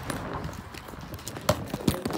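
Scattered short clicks and knocks over a low background hiss. The two loudest come about one and a half seconds and two seconds in.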